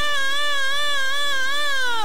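A woman's gospel lead vocal through a microphone, holding one long high note with an even vibrato and sliding down in pitch near the end.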